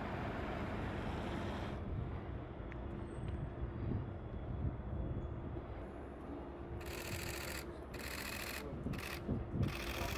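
A car rolling slowly across paving stones, its noise fading out about two seconds in. Near the end come four short bursts of rapid camera-shutter clicking.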